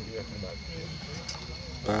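Background speech: people talking quietly, with a louder voice coming in right at the end.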